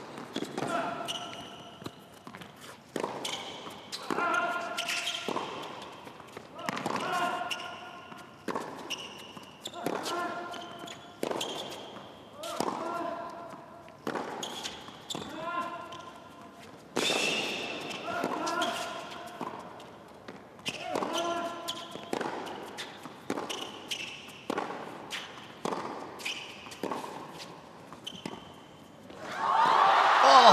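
A long tennis rally on an indoor hard court: a tennis ball struck by racket strings and bouncing on the court, roughly once a second, with a short vocal grunt from the players on many strokes. Near the end, the crowd breaks into loud cheering as the point is won.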